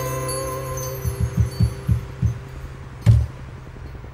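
The last acoustic-guitar chord of a song rings out and fades. It is followed by a few low hand-drum thumps on a cajón and one louder, sharper final hit about three seconds in.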